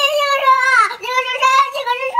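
A small child counting aloud through tears ("this is one, this is two, this is three, this is four") in a high, drawn-out wailing voice, with a short break about a second in.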